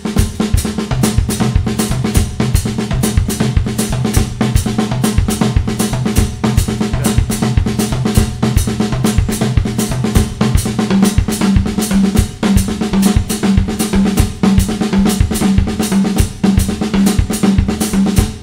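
Drum kit played in a steady groove of rapid, continuous strokes: a repeating foot and left-hand ostinato, with the right hand accenting the 'and' of beat one and the 'and' of beat three in each measure. The drums ring with steady low pitches under the strokes.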